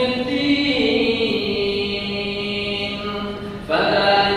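A man chanting Qur'anic verses in Arabic in a melodic recitation style, holding long notes that step slowly up and down in pitch. The voice dips briefly for a breath near the end, then starts a new phrase.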